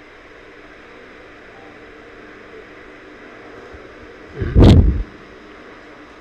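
A steady low hiss of background noise, broken about four and a half seconds in by one loud, muffled thump lasting about half a second.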